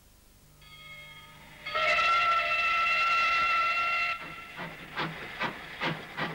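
Steam locomotive whistle blowing a steady multi-note chord: it comes in faintly, sounds loud for about two seconds, then cuts off. The locomotive's exhaust then starts chuffing at roughly two to three beats a second.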